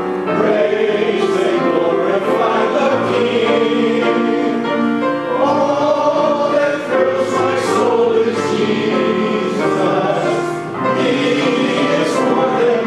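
A congregation singing a hymn together, with a man's voice leading through the microphone, accompanied by piano.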